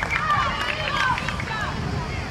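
Several young voices shouting and calling out at once, over a low rumble of wind on the microphone.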